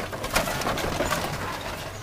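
A bird, probably a dove, calling in short cooing notes.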